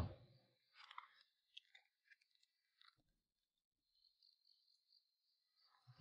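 Near silence: faint background tone with a few soft rustles and clicks.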